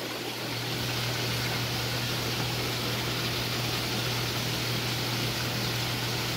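Steady rushing water-flow noise with a low steady hum from an aquarium system's pump and plumbing, growing slightly louder about half a second in.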